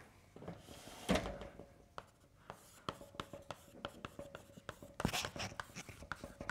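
Chalk writing on a blackboard: a run of short sharp taps and scrapes as letters are chalked, with one louder knock about a second in.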